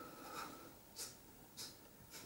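Faint, quick breathing: short hissing puffs of breath about every half second, with a thin whistling tone fading out in the first half second.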